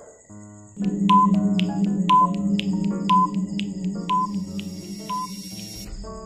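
Countdown-timer sound effect: a held synthesizer drone with ticking and a short high beep about once a second, five beeps in all, starting about a second in.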